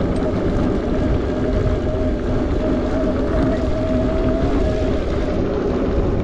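Bafang BBSHD mid-drive e-bike motor whining steadily under power, several steady tones, over wind rush on the microphone and tyres rolling on a dirt trail.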